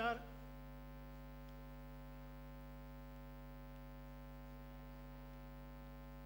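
Steady electrical mains hum in the microphone and sound-system chain, a low, unchanging hum with a stack of even overtones.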